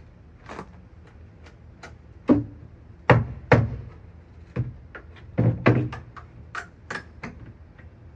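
Mallet striking the wooden shelf boards of an old entertainment center, a dozen or so irregular sharp knocks, loudest in the middle, as the board is knocked loose to come out.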